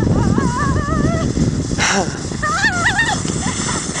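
A child squealing and laughing in high, wavering cries while sliding down a snowy slope on a sled, twice in short bursts, over a steady rough rushing noise.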